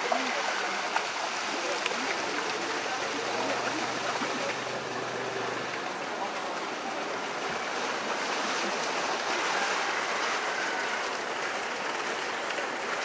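Steady rush of water pouring from a wall outlet into an elephant pool, with splashing from young Asian elephants wading in the water.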